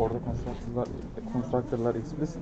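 Speech only: people talking in Turkish close to the microphone, a conversation between students and the lecturer.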